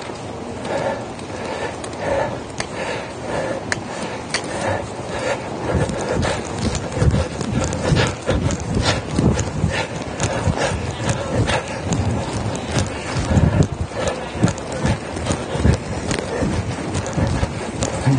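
Hoofbeats of a horse moving under saddle on arena dirt footing, a steady run of thuds that grows stronger about six seconds in.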